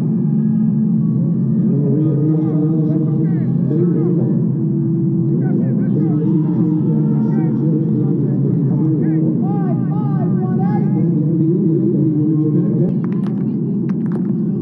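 Stadium crowd murmur: many voices talking over one another, steady throughout, with no single voice standing out. A few sharp clicks come near the end.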